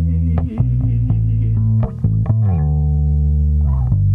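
Instrumental ending of a produced pop-rock song: electric guitar over a prominent bass guitar, with plucked notes changing through the first half, then a final chord held from about halfway through.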